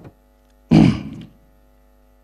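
Steady electrical hum from a public-address system, several even tones held under near quiet. About 0.7 s in, a single short voiced sound from the man at the microphone rings briefly in the hall.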